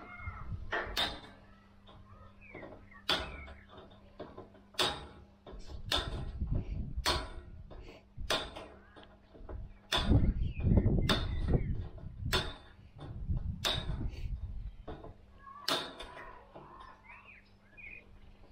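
Wire cutters snipping through welded steel wire mesh: a dozen or so sharp, irregular snips, roughly one a second, with the mesh rattling and being handled between cuts.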